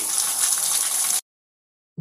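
Water pouring and running steadily, a rushing hiss, for about a second before the sound cuts off abruptly to silence.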